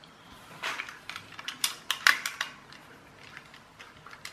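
A small screwdriver backing tiny screws out of a plastic toy-car chassis, with a run of light clicks and scrapes of metal on plastic, the sharpest about two seconds in, then fainter ticks.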